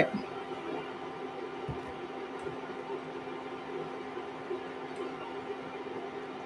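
Quiet room tone with a steady low hum, and a faint dull thump about a couple of seconds in.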